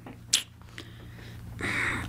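A short pause in a small studio: low room tone with a steady low hum, one sharp click about a third of a second in, and a soft breath drawn near the end just before speech resumes.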